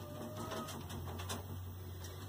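Faint scattered clicks and rustling as a hand strokes a rabbit inside a wire cage, over a low steady hum.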